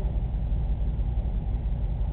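Steady low-pitched rumble with no distinct events.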